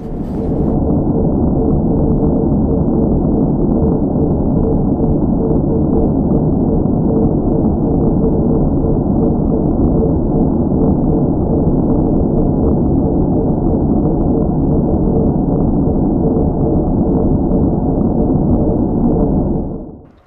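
Circular saw running steadily, heard muffled with its highs cut off and a steady whine under the noise; it stops abruptly near the end.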